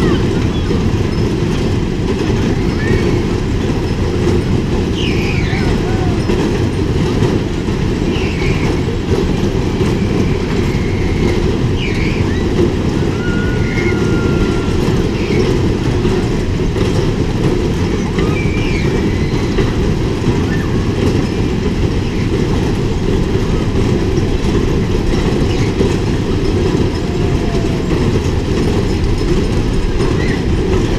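Tilt-A-Whirl running: a steady, loud rolling rumble of its platforms and spinning cars going round the undulating track, with faint voices and short shouts over it.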